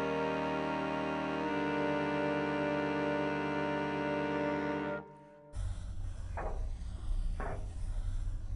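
Slow, sustained music chords that stop abruptly about five seconds in. After a short gap comes a low hum with a couple of short pencil strokes scratching across paper.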